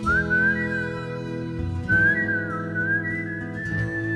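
A whistled melody over strummed acoustic guitar chords in a slow ballad's instrumental break. There are two whistled phrases, the second starting about two seconds in.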